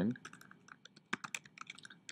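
Computer keyboard being typed on, an irregular run of quick key clicks.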